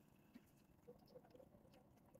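Faint, close sounds of two cats eating: small wet chewing and smacking clicks scattered through the quiet.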